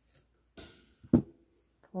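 Quiet handling of crocheted yarn with a faint rustle, then one short, sharp knock about a second in as a small object, likely the crochet hook, is set down on the work surface.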